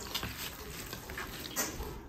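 Hand squishing and mixing rice with mashed egg yolk on a steel plate, with a couple of light clicks, then mouth noises as a handful is brought up to be eaten.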